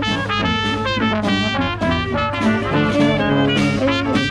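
Live New Orleans-style jazz band playing an upbeat tune: trumpet, trombone, clarinet and saxophone over a sousaphone bass line, with a snare drum keeping a steady beat.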